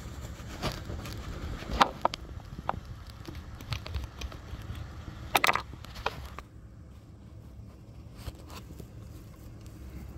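Scattered small clicks and knocks from a glass pH probe and a plastic calibration-solution vial being handled as the probe is set into the pH 4 fluid, the sharpest knocks about two seconds and five and a half seconds in. A steady low hum runs underneath.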